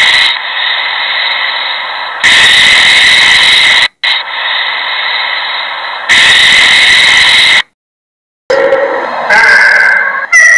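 Snake hissing: three long hisses, each loud at first and then trailing off softer, followed by a brief silence. A different sound with some pitched tones starts near the end.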